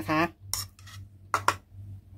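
A stainless-steel spoon clinking against a plastic bowl as the bowl of mashed plums is handled and set down: two pairs of short clinks, about half a second and a second and a half in.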